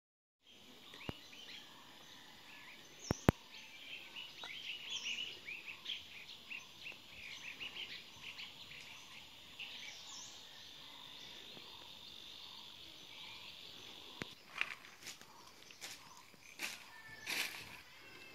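Birds chirping with many short, high calls, then a steady high insect buzz in the middle. A few sharp clicks about one and three seconds in, and rustling noises near the end.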